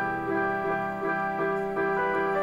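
Piano playing slow, sustained chords with no drums, the opening of a hip-hop beat.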